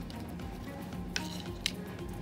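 Soft background music, with two light, sharp clicks a little after a second in from small craft pieces being handled.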